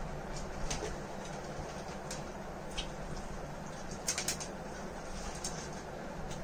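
Faint crunching and scattered short clicks as a crunchy fried-lentil snack is eaten straight off plates, over a steady low background hum, with a small cluster of sharper clicks about four seconds in.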